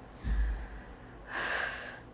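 A dull low thump, then a short, breathy exhale from a person close to the microphone.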